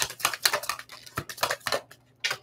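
A deck of tarot cards being shuffled by hand: a rapid run of papery flicks and clicks that thins out and stops near the end.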